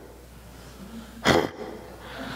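A man's vocal imitation of a buck deer's snort: one short, loud, forceful blast of breath about a second in.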